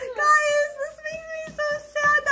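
Young child singing wordless held notes in a high voice, a few short phrases on nearly the same pitch.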